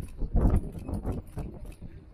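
Footfalls of a large poodle on stone paving slabs: a heavier thud about half a second in, then several lighter knocks and claw clicks as it walks on.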